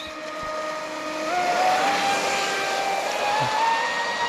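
Traxxas Spartan RC boat's brushless motor and propeller whining at speed over the hiss of spray. The pitch steps up about a second in and again past three seconds as it is pushed to a full-speed run.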